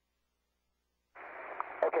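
Dead silence for about a second, then a radio channel keys open with a steady, narrow-band static hiss, and a man's voice begins to speak over it near the end.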